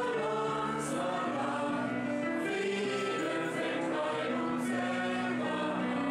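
A mixed choir of men and women singing together in held, sustained chords at a steady level.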